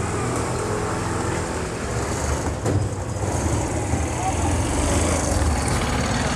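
A motor vehicle engine running steadily at idle: a continuous low rumble with street noise.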